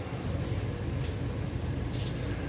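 Heater running inside the small dome, a steady rushing noise.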